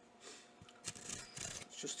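A knife blade slitting the packing tape on a cardboard mailer: a rasping scrape of blade on tape and cardboard that starts about a second in.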